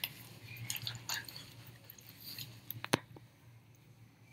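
Plastic bottle of soapy water and glitter being handled and shaken: faint sloshing and plastic crinkles, with one sharp click about three seconds in.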